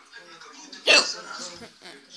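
People talking in a room, with one sudden loud, short sound about a second in.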